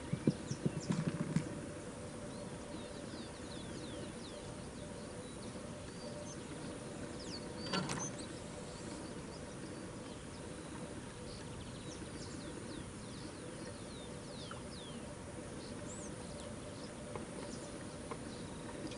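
Birds chirping in short, high, falling calls over a steady low hum. A cluster of clicks and knocks in the first second and a half, from fishing tackle being handled at the rod rest, and one brief knock about eight seconds in.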